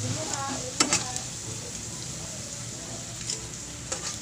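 Hot oil sizzling steadily in a wok as carrot-and-egg fritters fry. A couple of sharp clicks of metal tongs against the pan come a little under a second in, with lighter ticks later.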